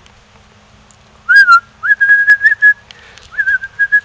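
A person whistling to call a puppy: a run of short, warbling whistle notes at one steady pitch, starting about a second and a half in, breaking off briefly and starting again near the end.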